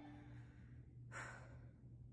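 Near silence after the song ends, broken by one faint short breath from the singer about a second in.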